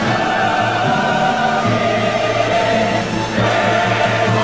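Mixed chorus and orchestra performing, the voices holding long chords over a sustained low bass note, with a change of chord partway through.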